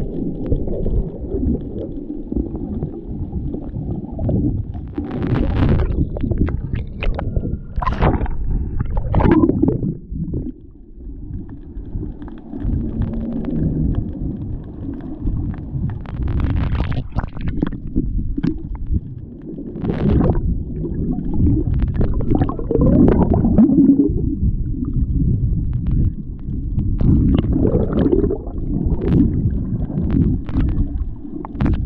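Water heard through a GoPro camera held underwater: a continuous muffled low rumble, broken several times by brief gurgling bursts of bubbles and splashing.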